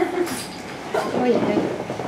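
A woman laughing, trailing off at the start and laughing again about a second in.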